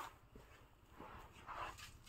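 Faint short vocal sounds from a baby, two of them in the second half.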